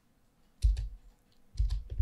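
Two clicks from working a computer's keyboard and mouse, about a second apart, each with a dull low thump.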